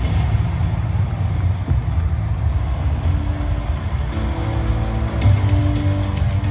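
Loud, bass-heavy music from the show's opening video, played over the arena's PA system. A dense low drone runs throughout, and a few held notes come in about halfway.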